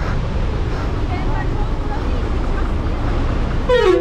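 Bus engine running close by, a steady low rumble, with faint voices about a second in and a voice near the end.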